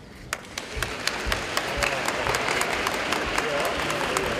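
Spectators clapping in a large gymnasium: a few separate claps begin about a third of a second in and swell within a second or so into steady applause, with scattered voices in the crowd.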